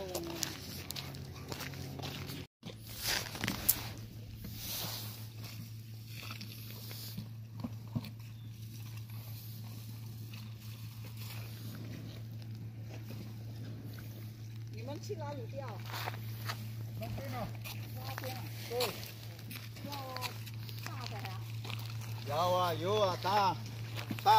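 A steady low motor hum, with faint voices now and then and a louder stretch of voices near the end.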